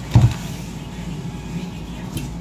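A steady low mechanical hum, with a brief low bump just after the start.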